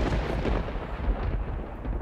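A deep, thunder-like rumbling boom, a dramatic sound effect laid over the scene, that hits suddenly and then slowly dies away, the hiss fading before the low rumble.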